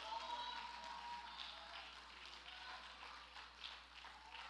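Faint congregation response in a large hall: scattered hand clapping and distant voices during a pause in the preaching.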